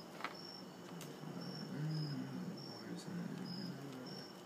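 Soft clicks and rustles of Bible pages being handled, with faint short high chirps repeating about twice a second throughout. A low murmured voice comes in briefly about halfway through.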